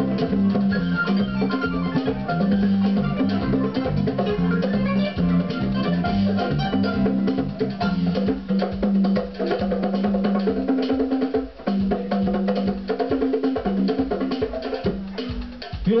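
Live band music: a pair of hand-struck drums playing a busy rhythm over a keyboard and a sustained, shifting bass line.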